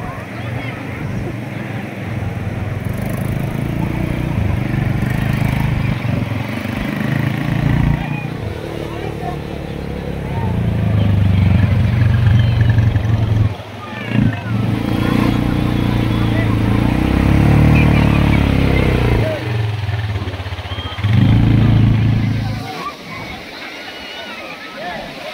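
Linhai quad bike (ATV) engine running as it drives over the sand. It grows loud as it passes close, and its note rises and falls several times before fading near the end, with crowd voices behind.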